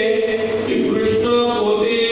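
A man's voice chanting a verse in held, drawn-out notes.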